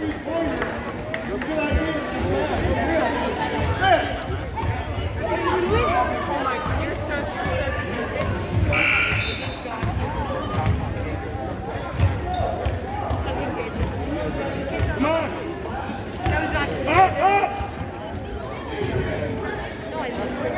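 A basketball being dribbled and bouncing on a hardwood gym floor, under the voices of players and onlookers in a large gym.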